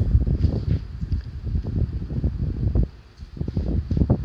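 Wind buffeting a phone's microphone while walking outdoors: an uneven low rumble with irregular thuds, easing briefly about three seconds in.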